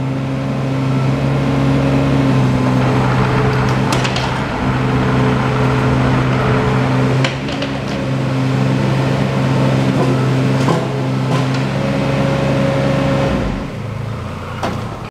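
Bobcat E16 mini excavator's diesel engine running steadily under hydraulic load as the boom and bucket work, with a few sharp knocks along the way. The engine note drops just before the end.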